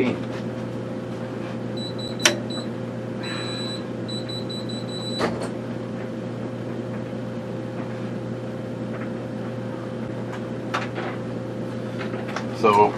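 High-pitched electronic beeps sound in a broken pattern for about three seconds, ending in one longer tone. A sharp click comes about two seconds in and another as the beeping stops, over a steady room hum.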